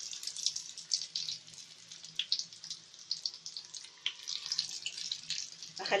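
Doughnut dough frying in deep hot oil: a sizzle full of sharp crackles and pops. It starts suddenly as the pieces go into the oil.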